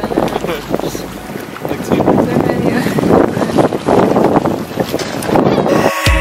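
Wind buffeting the microphone on a boat at sea, with people's voices and laughter breaking in and out.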